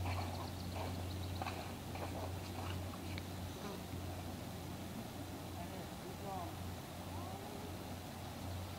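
Faint, distant voices over a steady low hum, with a few short faint ticks in the first few seconds.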